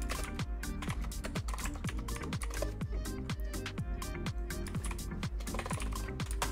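Computer keyboard typing, a run of quick key clicks, over background music with a steady beat.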